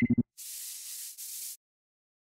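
Title-card transition sound effects: a brief buzzing electronic blip with a high beep at the very start, then two hissing spray-can bursts, the first about three-quarters of a second long, the second shorter.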